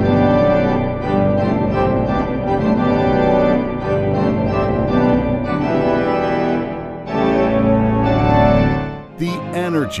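Allen digital organ playing loud, sustained chords on its reed stops. The chord changes about seven seconds in, with a heavier bass, and the sound drops back about nine seconds in.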